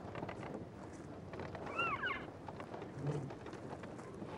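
Elk herd at a hay feed: a few short squeaky calls that rise and fall, in quick succession about halfway through, like the mews of elk cows, over steady background noise. A brief low sound follows about three seconds in.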